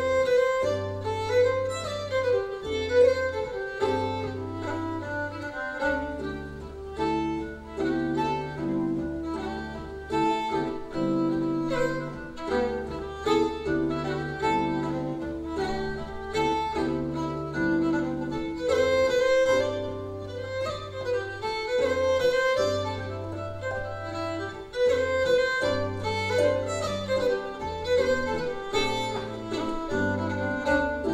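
Fiddle and lever harp playing a traditional tune together: the fiddle carries the quick melody while the harp gives low bass notes that change every second or two, with plucked chords and runs beneath.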